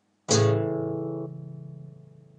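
Guitar sounding an A major triad: root A on the fifth fret of the low E string, C-sharp on the fourth fret of the A string, and E on the D string. It is struck once and left to ring, fading away.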